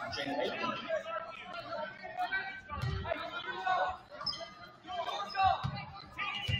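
Overlapping voices and chatter from spectators and players in a gymnasium. A couple of dull thuds from the court come about three seconds in and again near the end.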